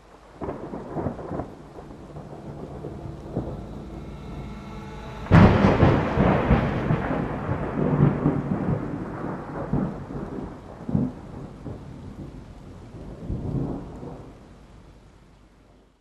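Thunderstorm sound effect: rain with rumbling thunder, a sudden loud thunderclap about five seconds in, then rolling rumbles that fade away near the end.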